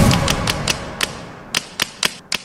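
Typewriter-style key clicks, a sound effect as on-screen text types out: about seven sharp, unevenly spaced clicks over the fading tail of the background music.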